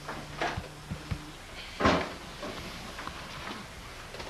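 Several knocks and clunks as a plastic bucket is carried and handled. The loudest is a sharp knock about two seconds in.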